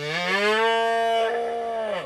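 A calf mooing: one long, loud call that rises in pitch at its start, then holds steady until it stops near the end.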